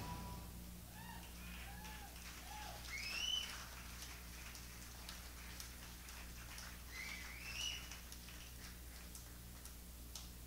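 Faint whistling: a few short up-and-down slides in the first three seconds, a rising whistle at about three seconds and two more near seven seconds, over a steady low electrical hum.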